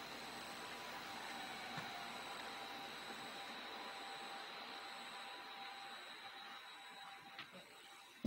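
Faint steady hiss of room tone with thin, high whining tones running through it, slowly fading toward the end.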